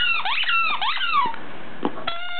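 Squeaky dog toy squeaking as a dog chews it: a quick run of high squeaks, each gliding up and down in pitch, that stops about two-thirds of the way through.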